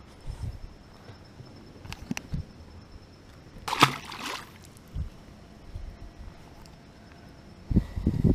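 A largemouth bass of about a pound released and dropped into the pond beside the boat, landing with a single splash about four seconds in. A few soft low thumps come before and after it.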